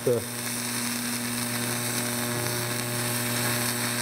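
TIG welding arc running steadily with a buzz and a hiss, heating a cast iron casting just enough to flow bronze filler into a crack: TIG brazing, not melting the cast iron.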